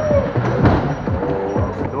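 Loud music with a steady beat and a held melody, played over the speakers of a bumper-car arena.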